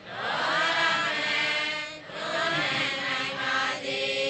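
A Buddhist monk's voice chanting in two long, drawn-out phrases with a brief break between them.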